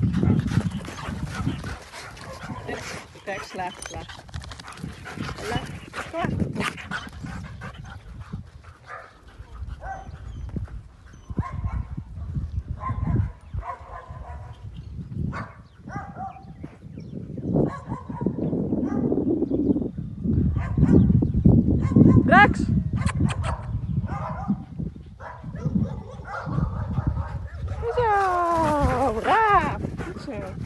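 Several dogs barking and yelping as they run and play. Near the end there is a string of high, wavering whines or yelps.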